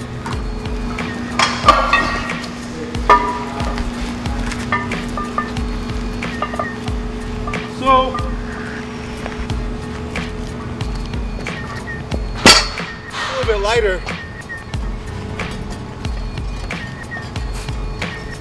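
Iron weight plates and loading handles clinking and knocking on the ground as they are handled, a few separate knocks with the sharpest about twelve seconds in.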